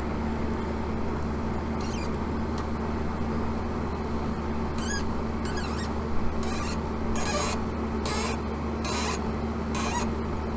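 A ratcheting service wrench is worked on a condensing unit's refrigerant service valve over a steady running hum, with a brief squeak about halfway. In the second half come short raspy ratchet strokes about once a second. The valve will not shut down, which the tech puts down to stripped threads on the valve.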